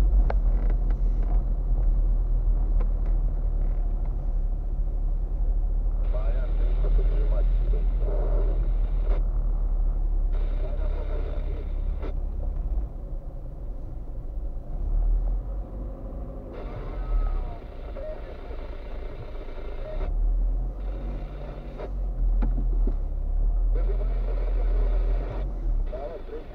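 A car driving slowly, heard from inside the cabin: a steady low engine and road rumble that eases off about halfway through and comes back, with faint voices at times.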